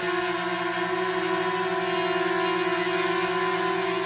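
DJI Mavic Mini quadcopter hovering in place: its four propellers give a steady, even hum of several held tones over a hiss of moving air.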